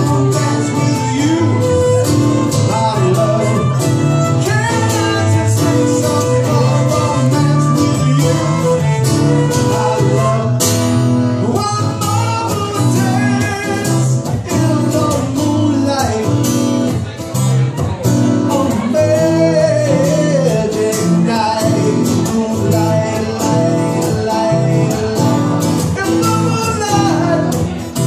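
Live acoustic folk band playing an instrumental break: a bowed fiddle with sliding notes over a strummed acoustic guitar and an electric guitar.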